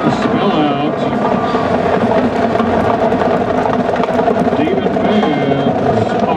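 College marching band playing on the field, with brass sustaining held notes and some sliding pitches over drums.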